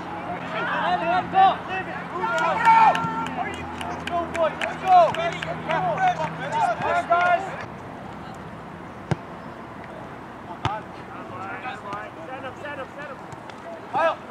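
Players shouting and calling out on a soccer field, many voices overlapping, for the first seven or so seconds. The sound then drops abruptly to a quieter open field with faint distant calls and a couple of sharp single knocks of a ball being kicked.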